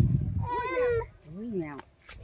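A cat meowing twice, the calls rising and falling in pitch.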